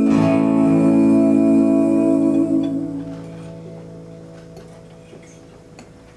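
Final chord of an acoustic folk song on acoustic guitar, struck once and left to ring, fading away over about four seconds: the end of the song.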